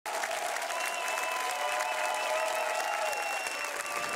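Studio audience applauding steadily, with a few long cheering calls over the clapping.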